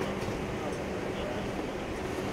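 Steady machinery hum aboard a ship at sea, a constant low drone with a couple of held low tones and no breaks.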